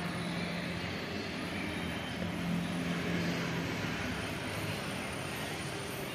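Steady low engine drone with a hum that swells about two to three and a half seconds in.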